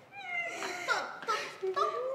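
Several short wordless vocal cries in quick succession, each sliding up or down in pitch.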